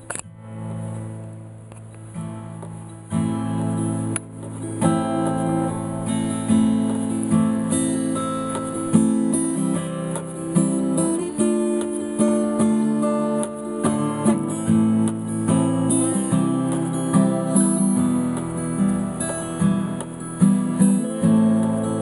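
Solo acoustic guitar playing a song's introduction: a chord rings quietly at first, then about three seconds in a steady, louder chord pattern begins and carries on.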